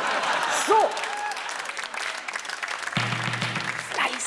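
Studio audience applauding, with a woman's short "So" under a second in; a steady low hum starts about three seconds in.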